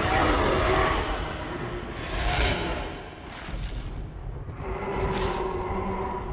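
Film soundtrack of orchestral score over heavy low rumbling booms, with whooshing swells about two and a half, three and a half and five seconds in. In the second half the music holds long steady notes.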